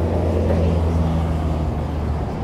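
A steady low mechanical hum that holds evenly, then fades just after the end.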